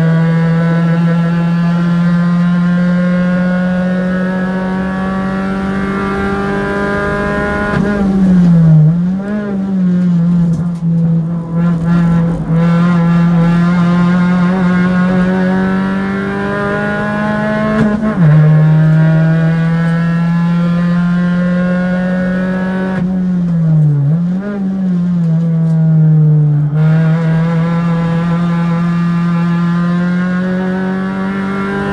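Race car engine running hard, heard on board, its pitch climbing slowly as it pulls through the gears. About eight seconds in, and again a little past twenty seconds, the pitch dips and flicks back up as the car brakes and downshifts for corners. Near eighteen seconds a sudden drop in pitch marks an upshift.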